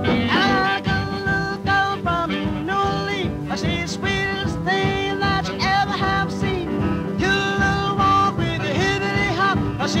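Jump blues band recording playing its instrumental introduction: held, bending melody notes over a steady beat.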